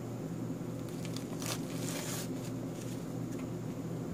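A fork cutting through the crisp fried crust of a mashed-potato patty, a few faint crunches and scrapes about one to two seconds in, over a steady low hum.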